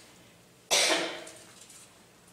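A single cough, sudden and short, fading away within about half a second, under a second in.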